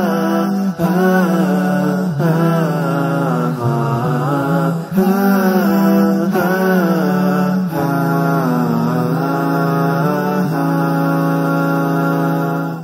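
Vocal music: a chanted melodic voice line that rises and falls in phrases over a steady low drone.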